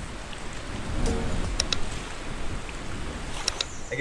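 Steady rushing water noise, like surf or waves, with a few short sharp ticks over it: two together past the middle and one near the end.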